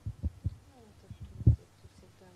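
A few dull, low thumps, three close together at the start and a louder one about one and a half seconds in, like a microphone being bumped or handled. Under them is faint, low speech.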